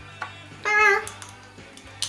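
A woman's voice: one short, drawn-out, high-pitched syllable a little over half a second in, with a faint click just before it. No machine is running.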